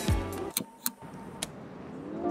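A beat-driven background music track cutting off, followed by three sharp clicks over a quiet, even background.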